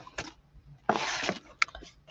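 Handmade cardstock cards being handled and slid over a cutting mat: a short papery scrape about a second in, then a couple of light taps.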